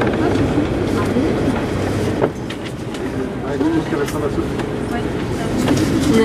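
Paris Métro line 2 train running through the tunnel into a station, with wheels rolling and a sharp click over the rails about two seconds in.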